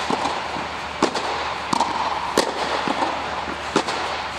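Tennis balls being struck with rackets and bouncing on a clay court, a sharp pop every half second to a second, inside an inflatable tennis dome, over a steady background noise.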